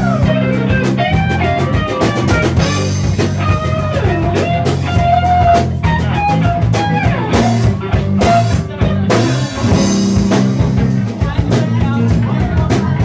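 Live rock-funk band playing an instrumental jam: an electric guitar plays a lead line with bent notes over drum kit and bass.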